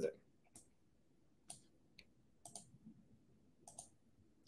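Faint clicks, about five of them spread over a few seconds, against near silence: a computer mouse or keyboard being clicked as the presentation slide is advanced.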